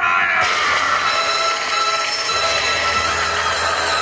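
Projection-show soundtrack music starting a new segment: it comes in about half a second in with a held high note, and a bass line joins about two seconds later.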